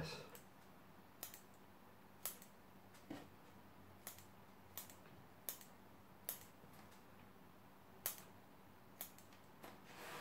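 Bonsai scissors snipping side shoots off juniper cuttings: about a dozen short, sharp snips, roughly one a second, with a short pause before the last few.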